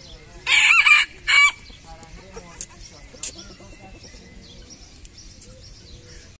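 Rooster crowing once, a short, loud crow in two parts about half a second in, followed by faint clucking.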